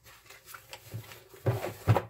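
A pause in speech: quiet room with a few faint soft clicks, then two short vocal sounds from the speaker near the end.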